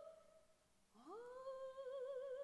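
Operatic soprano voice: a held note with vibrato ends and dies away in the hall's echo, leaving a short near-silent pause. About a second in, the voice slides up from low into a new held note with vibrato.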